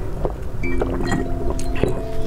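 A person drinking from a glass jar, with a few short gulping and clicking sounds, over background music with held notes.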